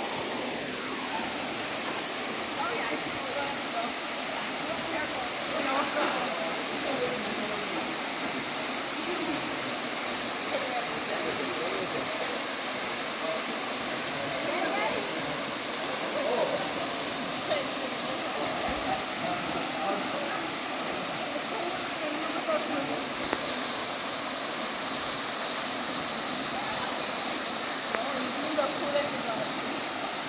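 Steady rush of a waterfall, with indistinct voices of people talking in the background.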